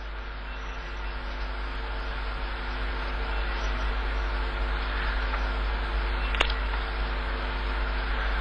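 Open broadcast audio line carrying steady hiss and mains hum, slowly growing louder, with a single click about six and a half seconds in.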